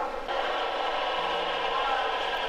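Steady mechanical noise of a metro station platform, starting abruptly a moment in, with a low hum joining about a second in.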